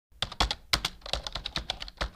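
Computer keyboard typing, a quick uneven run of keystrokes at about seven or eight a second, used as a sound effect as the text is typed onto the screen.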